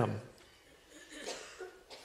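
A man's spoken word trails off, then a faint, brief cough sounds about a second in from a quiet, hushed room.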